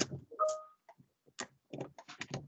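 Scattered light clicks and taps from a computer keyboard and mouse being worked, with a brief steady tone about half a second in.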